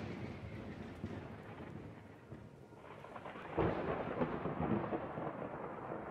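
Thunder-like rumble from the intro's sound design. A boom's low rumble dies away, then a second swell of rumble rises about three and a half seconds in and carries on.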